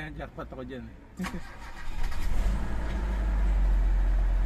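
Mitsubishi Adventure's gasoline four-cylinder engine being started from cold: the starter cranks about a second in and the engine catches about two seconds in. It then settles into a steady cold-start fast idle.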